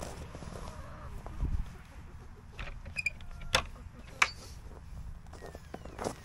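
Footsteps on snow and a few sharp clicks and knocks, one with a short ringing ping about three seconds in, over a low rumble.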